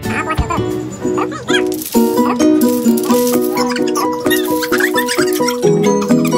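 Background music: a playful tune with a bouncy, evenly repeating pattern of short notes that comes in about two seconds in, over high squeaky sliding sounds.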